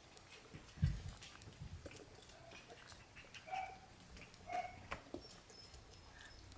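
Shiba Inu puppies stirring on paper bedding: faint rustling and small scratches, a soft thump about a second in, and two short, faint puppy squeaks a little past the middle.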